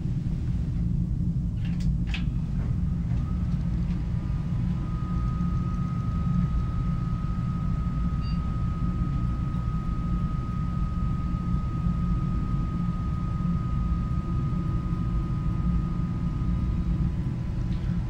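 Steady low hum of a desktop PC starting up, with a few sharp clicks about two seconds in. A thin, steady high whine starts around four seconds and cuts off near the end as the machine boots to its startup menu.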